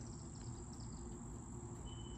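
Faint outdoor ambience: a steady high-pitched insect drone from crickets or similar insects, with a brief thin tone near the end.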